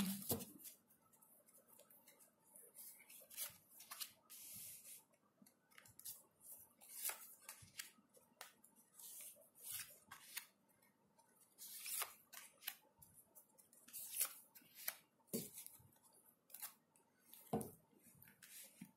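A deck of tarot cards being shuffled, then cards laid down one at a time on a cloth-covered table: faint, scattered card snaps, slaps and slides, with a longer stretch of shuffling about four seconds in.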